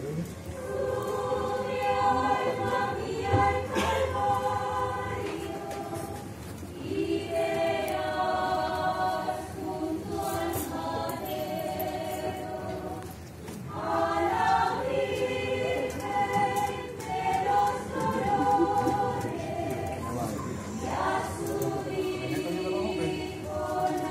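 Unaccompanied choir of nuns singing a slow hymn in long held notes, phrase after phrase, with short pauses for breath between phrases.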